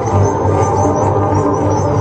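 Live music with a saxophone holding low, sustained notes over a steady low drone.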